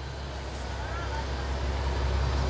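Street traffic from below, a steady low rumble that grows slightly louder through the pause.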